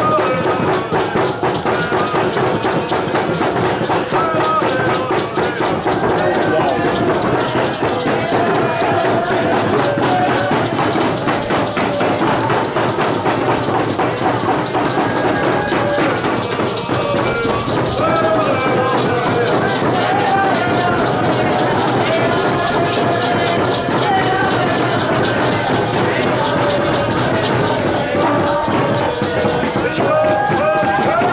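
A group of voices singing together over fast, continuous percussion.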